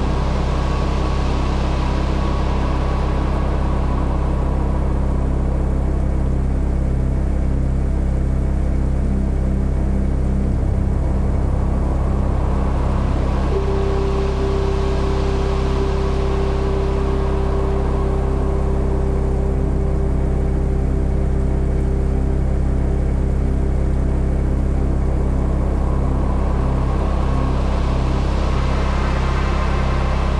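Ambient background music: steady low drones and held tones, with a hiss that swells and fades about every fourteen seconds.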